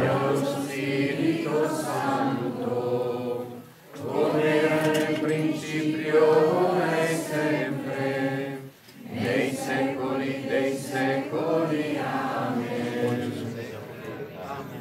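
Crowd of many voices praying aloud together in a chanted unison cadence, in three long phrases with brief pauses for breath between them.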